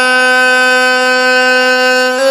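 A man's voice holding one long sung note at a steady pitch, drawn out at the end of a line of a Pashto naat.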